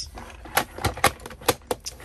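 Plastic Disney Cars Mack hauler toy trailer being handled and shifted on a shelf, giving a handful of sharp plastic clicks with light rattling between them.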